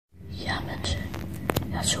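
Hushed whispering voices, starting after a moment of dead silence, with a couple of small clicks.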